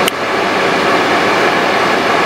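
Car air-conditioning blower running, a loud steady rush of air, with one short click right at the start.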